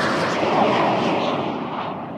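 Whoosh sound effect for an animated logo: a loud, noisy rush like a jet passing, slowly fading and growing duller.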